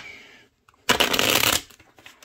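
A deck of fortune-telling cards being shuffled by hand. There is a sharp snap of cards at the start, then a dense, loud flutter of cards for under a second about a second in.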